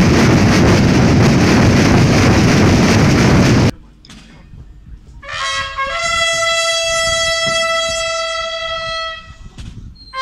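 Massed drums and bass drums rolling in a dense, continuous roar that cuts off suddenly a little under four seconds in. After a short lull, a brass instrument sounds a call: a brief note, then one long held note lasting about three and a half seconds.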